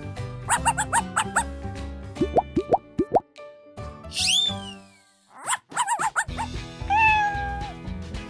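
Light children's background music overlaid with cartoon sound effects: a string of quick rising plops, then a long falling whistle glide about four seconds in, and a short animal-call sound effect near the end.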